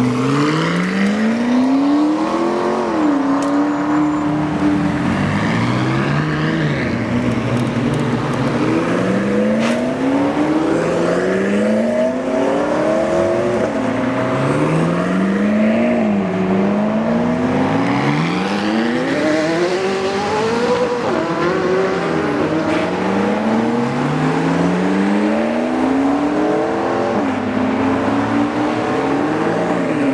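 McLaren supercars' twin-turbo V8 engines accelerating away one after another. The engine note climbs, drops at each upshift and climbs again, over and over as successive cars pull off.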